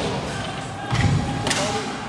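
Ice hockey play along the boards: a low thud against the rink boards about a second in, then a sharp crack about half a second later, over arena background noise.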